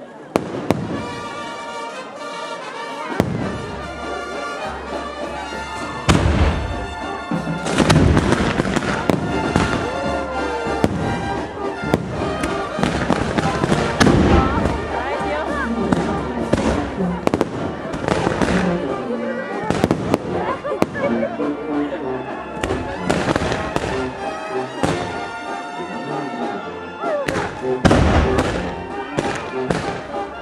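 Fireworks going off in quick succession, a steady crackle of bangs with several heavier reports, while music with a vocal line plays over them.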